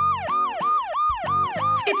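Police car siren sound effect in fast yelp mode. The pitch quickly rises and falls about three times a second, over and over.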